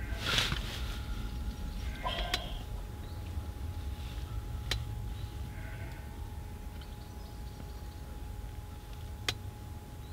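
Outdoor garden ambience: a steady low rumble with a few faint bird chirps and three sharp clicks spread through it.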